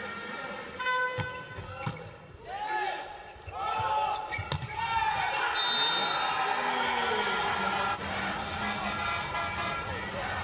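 Volleyball struck several times during a rally: a serve and sharp hand-on-ball hits about 1 and 2 seconds in, more around 4 seconds and near 7 seconds. An arena crowd cheers and shouts throughout, growing louder as the rally goes on.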